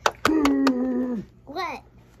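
A child sings a held "doo" while a plastic Littlest Pet Shop toy figure is tapped in quick dancing hops on a hard plastic base, four sharp taps in the first second. A short rising-and-falling voice sound follows near the end.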